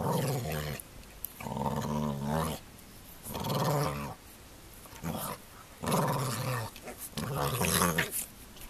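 An American Staffordshire Terrier play-growling at a puppy, deep growls coming in about six short bouts with brief pauses between them.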